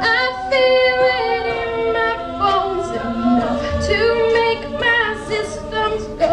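An a cappella vocal group singing held chords in harmony, several voices together with the chord changing every second or so.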